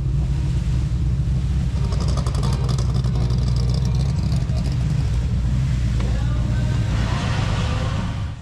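A vintage car's engine running with a steady, deep rumble.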